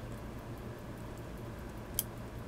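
Quiet room tone with a steady low hum while a watch mainspring is turned by hand inside its barrel to catch the barrel hook; a single sharp little click comes right at the end.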